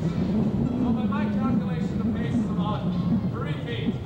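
Tow boat's engine running at speed, a steady drone whose pitch wavers up and down, with indistinct voices over it.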